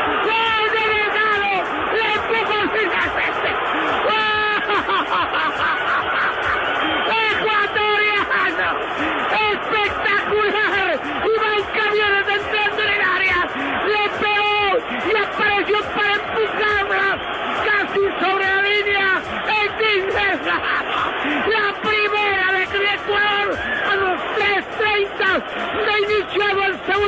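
A TV football commentator's excited shouting after a goal, with long, drawn-out held calls.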